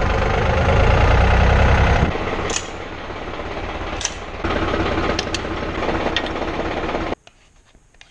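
Tractor diesel engine running. It is loudest and deepest for the first two seconds, as heard from the cab, then steadier and a little quieter, with a few sharp metal clanks as a rotary hay rake is hitched to the linkage. The sound cuts off suddenly near the end.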